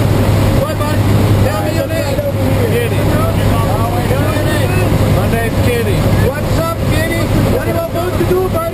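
Steady drone of a jump plane's engine and propeller heard inside the cabin, with a constant low hum, and voices talking over it.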